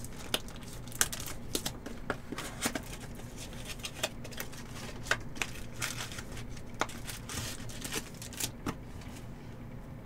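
A small cardboard trading-card box being handled and torn open by hand: scattered small clicks, scrapes and crinkles of paperboard, over a faint steady low hum.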